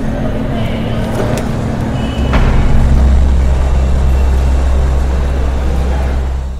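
A motor vehicle's engine rumble, a steady low drone that grows markedly louder about two seconds in and then fades away near the end.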